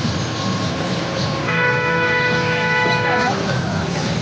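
A horn sounding one steady blast of nearly two seconds, starting about a second and a half in, over the noise of a crowd.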